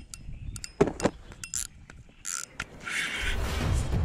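A few scattered clicks and short rattly bursts, then background music coming in about three seconds in.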